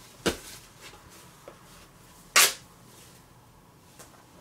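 Paper scratch-off lottery tickets being handled and scratched: a sharp click just after the start and a louder brief rasp about two and a half seconds in.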